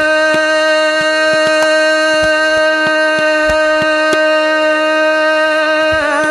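Hindustani classical vocalist holding a single long, steady note, doubled by the harmonium, with soft tabla strokes beneath.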